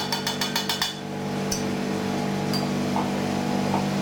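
A metal fork clinking rapidly against a stainless-steel cup of caramel as dates are dipped, then a few single light clinks. A steady low machine hum runs underneath.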